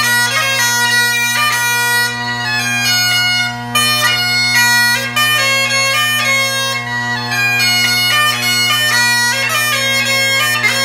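A set of bagpipes with three drones playing a tune: a steady drone sounds underneath while the chanter melody steps from note to note above it.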